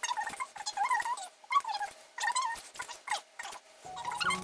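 A voice ranting, sped up into a high-pitched, unintelligible chipmunk-like gabble in several quick bursts.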